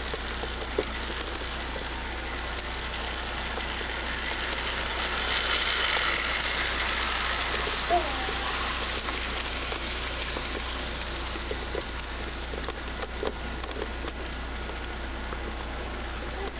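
Toy electric model train running on its track loop, a steady whirring rush from its motor and wheels on the rails that swells as the train passes close by, loudest about six seconds in, then fades. A single click just before the eight-second mark.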